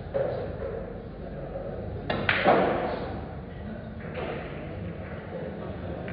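A pool shot: the sharp click of the cue tip on the cue ball about two seconds in, followed at once by a louder clack of balls colliding, in a hall with some echo.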